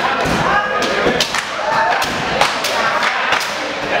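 Jiu-jitsu belts lashing a newly promoted student's back in a belt gauntlet: an irregular string of sharp smacks and thuds, over the voices of the group.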